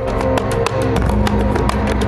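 Program music swelling up, with sustained notes over a fast, even ticking beat.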